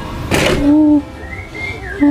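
Edited-in sound effect: a brief whoosh, then a steady held note lasting about half a second, a wavering higher tone, and the same held note starting again at the end.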